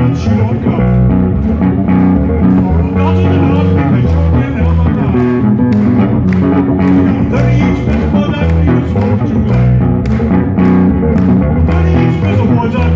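Solo electric bass guitar played live: a busy, rhythmic bass line of deep notes with sharp, percussive attacks. A man's voice sings over it at times.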